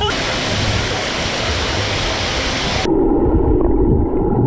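Swimming-pool water splashing in a loud steady hiss for about three seconds, then the sound turns suddenly muffled as it is heard from underwater, with a low bubbling rumble.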